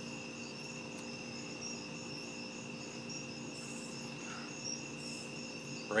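Crickets chirping steadily in the night, a high continuous trill with a pulsing upper note, over a low steady hum.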